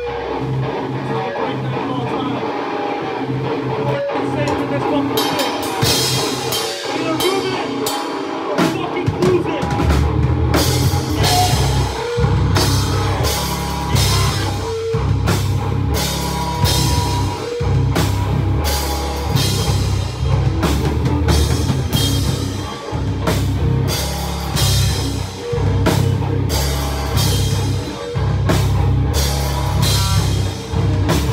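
Live band playing loud, heavy rock on electric guitar and drum kit. It starts sparser, with cymbal hits coming in around five seconds, and the full band with heavy bass and drums is playing from about ten seconds in.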